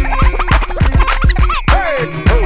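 Turntable scratching over a hip-hop beat: a vinyl record cut back and forth in quick strokes, giving short rising and falling pitch sweeps over steady drum hits and a low bass.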